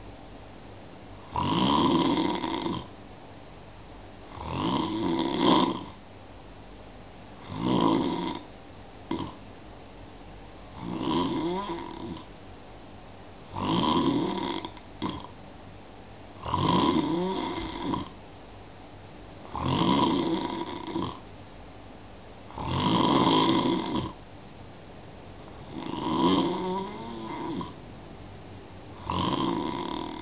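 Steady, rhythmic snoring by a sleeper: one snore about every three seconds, ten in all, with quiet breathing gaps between them.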